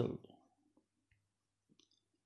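A spoken word ends just after the start, then near silence with a faint low hum and a few tiny clicks near the end.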